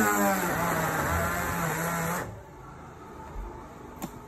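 Electric stick blender motor running under load in a thick, fermented grated-soap base, its pitch wavering as it labours, then cutting off suddenly about two seconds in. The blender burns out and smokes over this batch.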